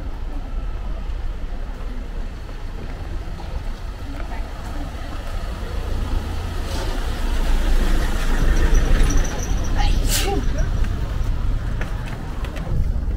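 Taxi van driving slowly past on a narrow street, its engine and tyre noise building to a peak about eight to ten seconds in, with a short sharp sound near the end of the pass. Passers-by talk over it.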